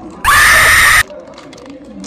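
A sudden, very loud shriek, distorted by clipping, lasting under a second and cutting off abruptly, just after a burst of laughter.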